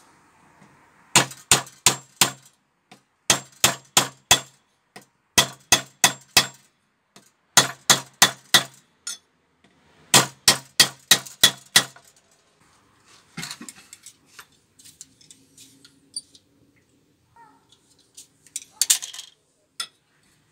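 A hammer striking metal in quick runs of five to seven ringing blows, about four a second, with short pauses between runs. Lighter clinks of tools and metal parts follow in the second half, with a brief cluster near the end.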